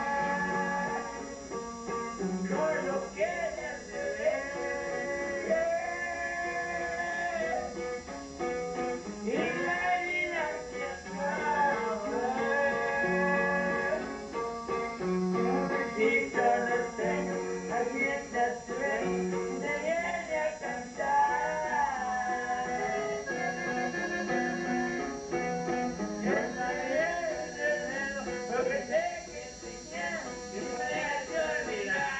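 Norteño music played live: a button accordion carries the melody over a plucked guitar, with a steady low bass beat.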